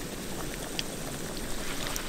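Sliced garlic gently sizzling in oil in a camping pot over a very low flame: a steady soft hiss with a few small pops.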